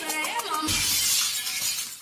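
Glass-shattering sound effect used as a transition in a dance-music medley. The song cuts off about half a second in and the crash runs for about a second, then dies into a short gap.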